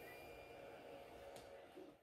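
Near silence: faint room tone with a faint steady hum and one soft click.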